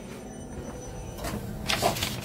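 A sheet of paper rustling close to the microphone, briefly near the end, over a steady background hum.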